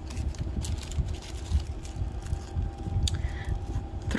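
Handling noise of costume jewelry: a few light clicks and rustles as bangles and paper price-tag cards are picked up and set down, over a low steady hum.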